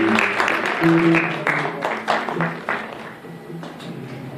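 Audience applause dying away after about two seconds, with a few scattered held notes from the band's electric guitar and bass under it.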